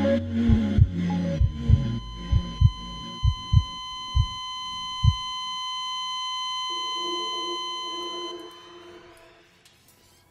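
Music-video sound effects: paired heartbeat thumps that slow and stop about five seconds in, under a steady high heart-monitor flatline beep that starts about two seconds in and cuts off after about eight seconds, the sign of the heart stopping. A soft low chord enters near the end and fades out.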